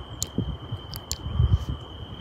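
A cricket trilling steadily on one high note, over a low uneven rumble on the microphone, with a few faint sharp ticks.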